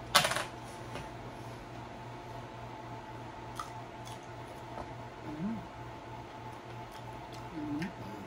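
A short, sharp clatter of something being moved or set down on a table near the start, over a steady background hum, followed by a few faint clicks and two brief closed-mouth hums.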